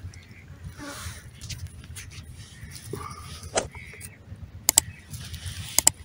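Quiet outdoor field ambience with faint bird calls and a few sharp clicks and rustles, most of them in the second half.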